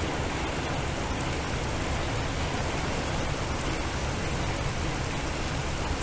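Steady, even rain-like hiss of water sound played by an electronic sound sculpture, with no distinct drops or events.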